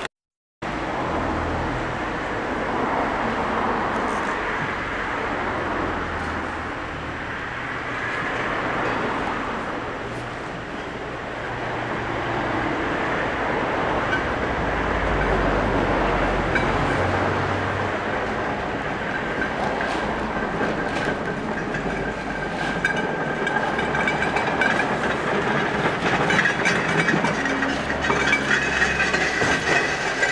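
Wooden levelling rakes dragged and scraping over bare, loose soil: a steady gritty scraping. Scattered clicks and knocks come in during the last third.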